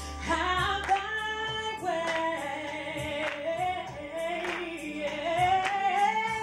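A woman singing a gospel song into a handheld microphone, holding long notes that slide up and down over instrumental accompaniment. A beat falls about every second and a bit.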